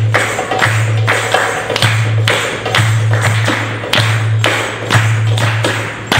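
Darbuka (Arabic goblet drum) played solo: deep ringing doum strokes come about once a second, between quick, sharp tek and ka slaps on the rim, in a driving rhythm.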